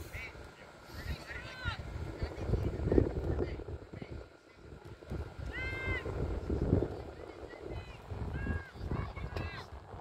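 Distant shouts from young players on a soccer field: short, high, arching calls, several times, over a low rumble of wind on the phone microphone.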